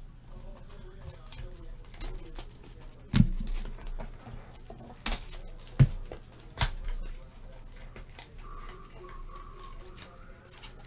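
Trading cards handled and sorted by hand, with four sharp taps a few seconds in as card stacks are knocked square and set down on the table. Faint wavering tones sound in the background near the end.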